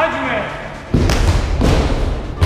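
A short shout at the start, then kicks thudding onto a hand-held karate striking pad, several hits from about a second in.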